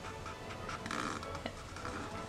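Freshly cut twig dip pen scratching across paper as it draws an ink line, a faint dry scratching that is strongest around the middle.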